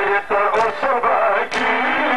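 A Shia mourning lament (noha) being sung, a voice chanting a melody that bends up and down and breaks between phrases.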